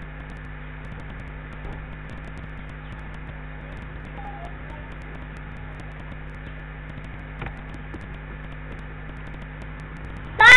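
Steady background hiss with a low electrical hum, and one faint click about seven and a half seconds in.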